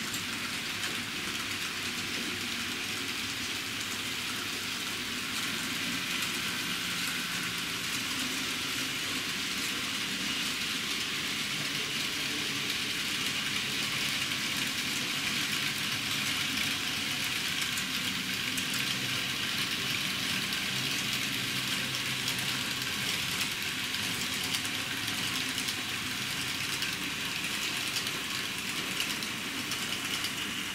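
N-scale model trains running on the track: a steady motor hum with a hiss of small wheels rolling on the rails, a little louder from about six seconds in.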